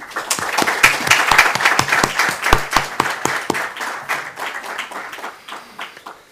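Audience applauding: the clapping starts at once, is loudest over the first few seconds, then thins out and dies away near the end.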